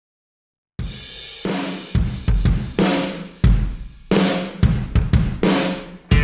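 Drum kit playing the intro of a rock song as background music, with heavy kick-drum thumps and crashing cymbals that ring out between hits. It starts about a second in, out of silence.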